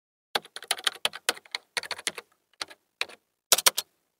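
Computer keyboard typing sound effect: quick runs of sharp key clicks broken by short pauses, stopping just before the end.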